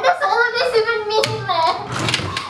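A young woman's distressed voice, sobbing as she speaks, with one sharp hand clap a little past halfway.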